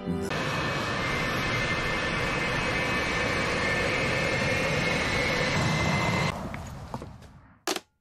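Fighter jet engine running with a steady rush and a high whine. It fades away over the last two seconds.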